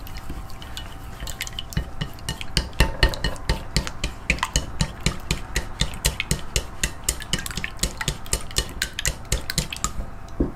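Egg mixture for steamed eggs being stirred briskly with a utensil, which clinks quickly against the side of the vessel, about five or six clinks a second, speeding up about a second and a half in.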